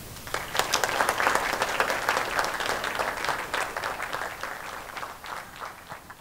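Audience applauding: many hands clapping, swelling quickly just after the start and then slowly dying away.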